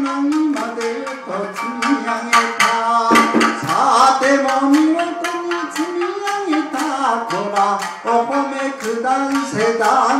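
Japanese minyo folk song: a male voice sings a long, bending, ornamented melody over a Tsugaru shamisen struck in quick, sharp, percussive plucks.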